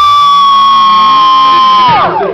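A loud, sustained high electronic tone over the PA system, held steady on one pitch and then sliding down in pitch at the very end.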